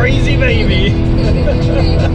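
Steady road and engine rumble inside a moving Jeep's cabin, with music and a high-pitched voice over it.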